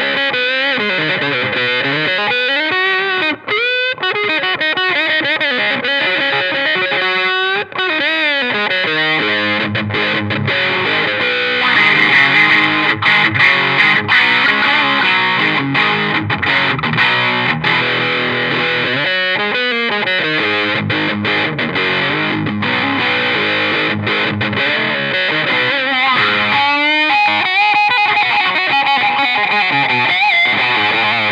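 Overdriven Les Paul electric guitar played through an envelope-filter (auto-wah) pedal. It starts with single-note lead phrases with bent notes, then from about ten seconds in turns to fuller, denser riffing.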